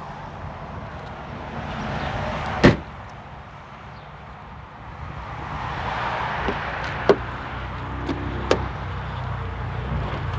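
A car trunk lid is pulled down and shuts with one loud slam about three seconds in. Later come a few light clicks as the rear door handle is tried while the doors are still locked.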